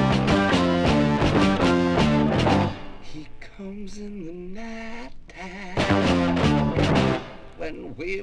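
Late-1960s rock band music played from a vinyl LP. The full band plays loudly until about three seconds in, then drops to a quieter passage carried by a single sliding melodic line. It swells back to full band about six seconds in, then falls quiet again near the end.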